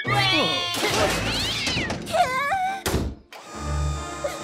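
Cartoon character's high, wavering wordless cries as he tumbles, a noisy clatter, a second run of cries about two seconds in, and a sharp thunk near three seconds. After a short dip, light background music follows.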